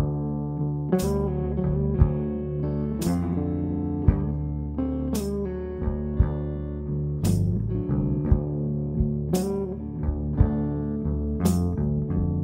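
A blues band playing live: electric guitars over drums and sustained low notes, with a cymbal struck about every two seconds.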